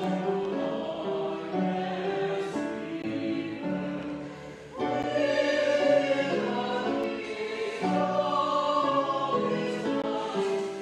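A small choir of three singers singing a hymn in a large, echoing church nave, holding long notes phrase by phrase. The singing briefly drops away for a breath between phrases about four and a half seconds in, then comes back strongly.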